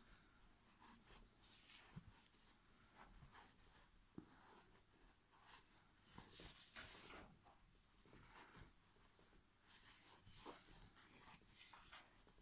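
Faint rustling and scratching of fiberfill stuffing being pressed by hand into a crocheted amigurumi toy, with a few soft ticks.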